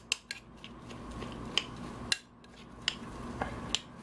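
A metal spoon stirring and breaking up a crab meat stuffing in a ceramic bowl, scraping through the mix with scattered sharp clinks against the bowl.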